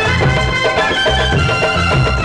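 Marathi film song music in an instrumental passage: a held melody line over a steady bass beat.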